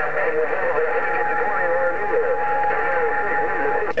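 Distant voices coming over a President HR2510 radio's speaker on 27.085 MHz, thin and muffled, with a steady whistle tone over them from about a second in until just before the end.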